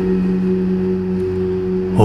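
Steady background music drone, holding one low tone with a fainter higher tone above it.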